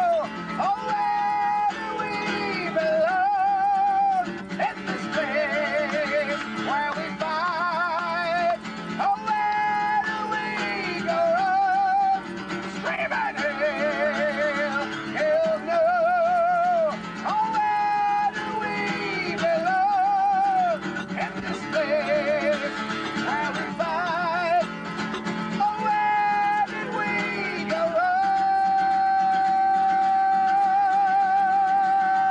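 Acoustic guitar strummed while a male voice sings long, held notes with wide vibrato. Near the end one long note is held steady.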